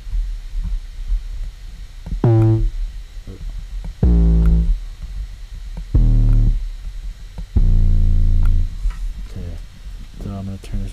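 808 bass sample in a software sampler, played four times as single notes about half a second to a second long, while the low G is picked out on the keyboard. The first note is higher and the other three sit much deeper.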